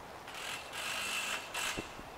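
A brief hissy mechanical rasp in two stretches, the first carrying a faint thin whistle, the second ending in a soft knock.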